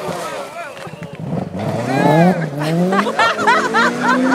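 A rally car's engine and gravel noise fade as the car runs away down the stage. From about a second and a half in, several people's voices break in with excited calls and exclamations.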